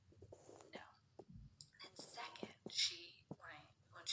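A woman speaking softly, close to a whisper.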